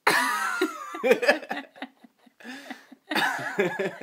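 A person laughing hard in three breathless bursts, starting suddenly, with a short pause between each.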